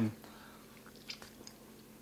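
Faint mouth sounds of biting into and chewing a soft, squishy dried fruit, taken for a dried prune, with a few small wet clicks over quiet room tone.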